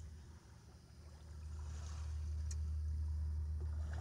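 A steady low hum under a soft wash of noise that dips early on, then swells after about a second and a half and holds, with one faint click in the middle.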